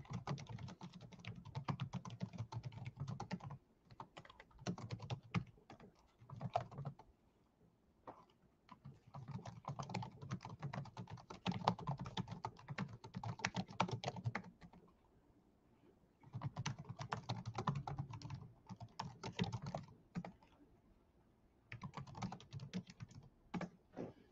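Typing on a computer keyboard in several bursts of rapid key clicks, each a few seconds long, with short pauses between them.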